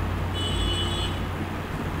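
Steady low hum and faint background noise on the narration microphone, with no speech. A faint high-pitched tone sounds briefly about half a second in.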